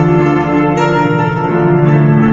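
Digital keyboard playing sustained chords in a bell-like, organ-like voice over a held low note, with a new, brighter chord struck about three quarters of a second in.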